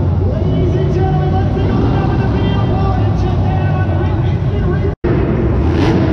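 Monster truck engines running in an indoor arena, a loud, steady low rumble, with a public-address voice over it; the sound cuts out for a split second about five seconds in.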